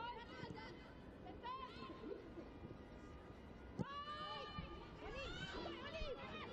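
Faint shouts and calls from women's voices on a football pitch, picked up over a low stadium background. One call stands out about four seconds in.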